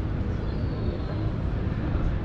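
Steady low rumble of wind buffeting the microphone at an open, high vantage point, over faint outdoor ambience.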